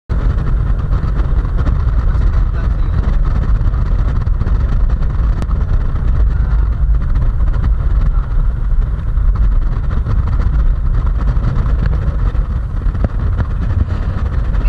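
Steady low rumble of a car on the move, heard from inside the cabin: tyre and engine noise.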